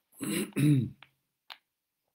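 A man clearing his throat: two short voiced pushes, the second louder with a falling pitch, followed by a couple of faint clicks.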